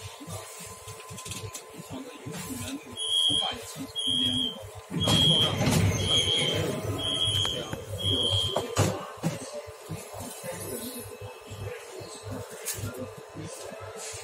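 Metro train door warning beeper sounding six short high beeps, about one a second, over the car's low rumble and passenger bustle, which grows louder midway through the beeps.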